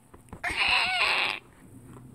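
A single rough, screeching cry of about a second, starting about half a second in, made by a person voicing the toy dinosaur.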